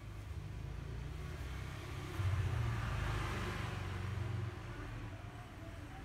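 A vehicle passing by, its noise swelling about two seconds in and fading a couple of seconds later, over a steady low hum.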